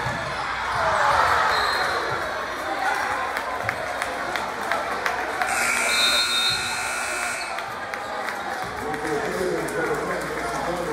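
Basketball game in a gym: the ball bouncing on the hardwood and players' and spectators' voices over a steady crowd murmur. About halfway through, a scoreboard horn sounds a steady electronic tone for about two seconds.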